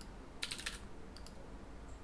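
Computer keyboard keystrokes: a quick run of about five keys about half a second in, then two lighter single taps a moment later.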